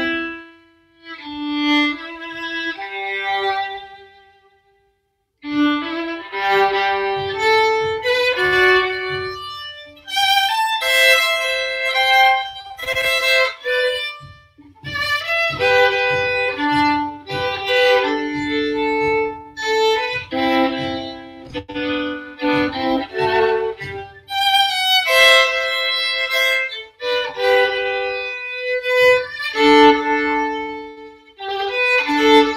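Solo violin playing a bowed melody. It breaks off briefly about four seconds in, then resumes with quicker runs of notes.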